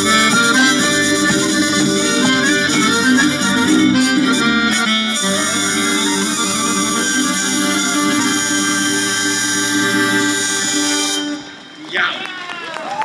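Live Occitan folk band playing a tune with hurdy-gurdy, accordion, violin, guitar and electric bass, over steady sustained notes. The music ends about eleven seconds in.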